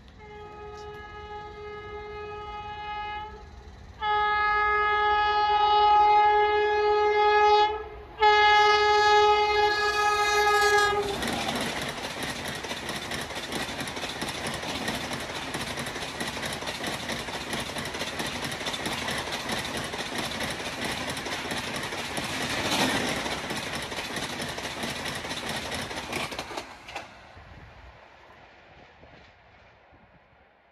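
A WAP7 electric locomotive sounding its horn in three blasts, the middle one longest, as the express approaches at about 130 km/h. Then the train rushes past for about fifteen seconds with rapid wheel clatter over the rails, and the sound fades away near the end.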